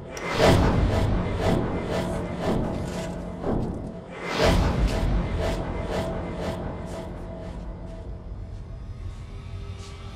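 Suspenseful horror score: a low booming hit just after the start and another about four seconds in, over a held drone and a ticking pulse about twice a second. The score grows quieter in the second half and the ticks thin out near the end.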